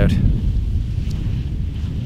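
Wind buffeting the microphone outdoors: a heavy, uneven low rumble.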